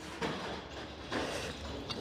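Faint scratching and rustling of a carpentry pencil drawing a mark along a steel square on a hardwood beam.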